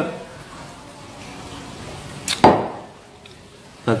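A drinking glass set down on a wooden table: one short, sharp knock about two and a half seconds in, over faint room sound.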